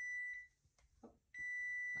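Cooking timer going off with a steady high-pitched beep, heard twice: one long tone stops about half a second in, and another starts near the end. It signals that the set cooking time is up.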